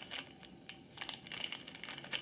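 Faint handling sounds: a few light clicks and soft rustles as small plastic cosmetic powder jars are turned in the hands.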